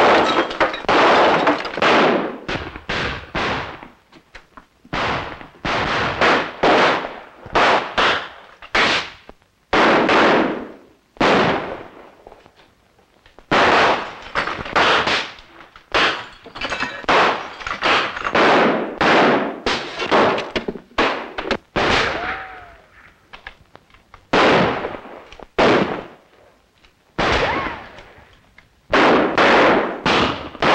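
A sustained exchange of gunfire in a 1930s film soundtrack: irregular volleys of sharp, echoing shots, one to two a second with brief lulls, and glass breaking among them. A short falling whine about two-thirds through.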